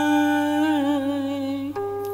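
Vietnamese ngâm thơ chanting: a male voice holds the last syllable of a line in one long sung note that wavers and ends about 1.7 s in. A steady accompanying instrument note then carries on alone.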